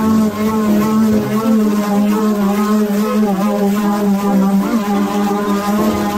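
Corded electric palm sander running steadily against weathered treated pine 2x4 bench boards, giving an even hum that dips briefly about five seconds in. Background music plays underneath.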